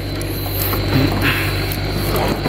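Live small striped catfish (cá sát sọc) flopping and slapping against each other in a plastic basin: a dense, rapid crackle of small clicks over a steady low hum.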